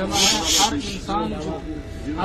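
A person's voice talking, with a loud rasping hiss in the first half-second.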